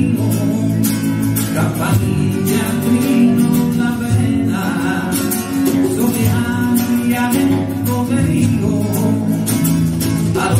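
Live Andalusian rock song: a man singing over a strummed electro-acoustic guitar.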